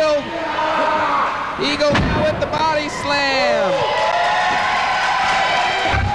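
Arena crowd noise with shouting voices, and a heavy thud about two seconds in as a wrestler lands on the ring mat.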